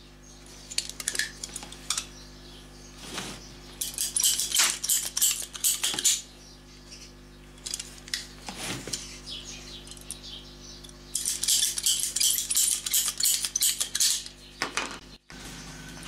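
Bursts of light clicking and metallic clatter as hand tools and cut lengths of garden hose are handled on a steel workbench, in three clusters, over a faint steady low hum.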